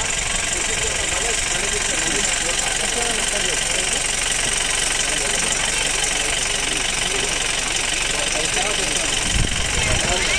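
An engine idling steadily, with indistinct voices talking underneath.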